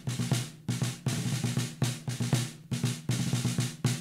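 Instrumental break of a stage-musical song: a drum kit plays a driving, evenly repeating snare and bass-drum pattern over a steady bass line, with no singing.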